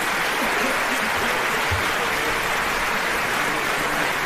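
Theatre audience applauding steadily, an even clatter of many hands.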